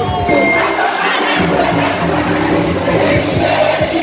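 Live band music with drums and guitar, and a crowd singing and cheering along loudly.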